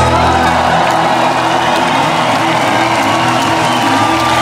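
A live band's final chord ringing out at the end of a song while the audience applauds and cheers; the bass drops away about a second in, leaving mostly the crowd's clapping and cheering over a few held notes.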